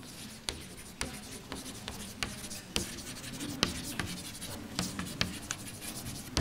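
Chalk writing on a chalkboard: quiet, irregular taps and scratchy strokes as a line of handwriting is written.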